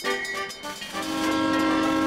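Cartoon train horn sounding one long steady note from about a second in, as a train approaches a level crossing. It is preceded by a few dings of the crossing's warning bell.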